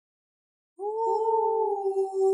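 Silence, then a little under a second in a long howl starts and is held at a nearly steady pitch.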